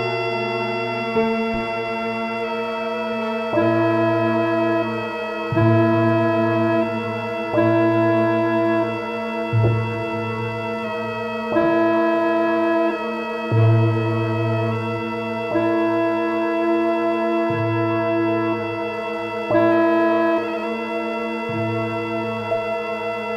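Korg AG-10 General MIDI sound module playing sustained electronic tones, driven note by note over MIDI by the Fragment spectral synthesizer. A steady drone holds throughout, while a low note and higher notes switch on and off about every two seconds.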